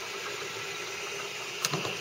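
RepRap-style 3D printer with an all-aluminum print head running: a steady mechanical hum of its fan and motors, with one brief click about a second and a half in.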